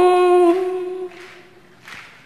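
A woman's singing voice holding the last note of a devotional song line at a steady pitch, then fading away about a second in, leaving quiet background noise.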